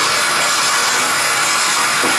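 A steady, loud, dense hiss of noise with no clear tone or rhythm.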